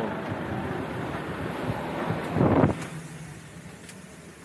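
Bus engine idling with a steady low rumble while people board. About two and a half seconds in there is a brief, loud rumble on the microphone, and the sound quietens after it.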